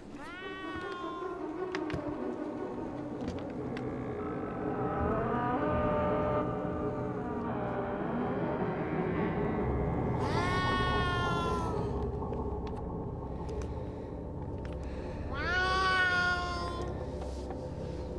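A cat meowing three times: near the start, about ten seconds in, and about fifteen seconds in, each call rising in pitch and then holding. Low sustained background music runs underneath.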